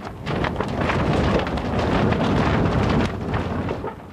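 A steady, loud rushing noise. It starts just after the narration stops and fades out shortly before the narration resumes.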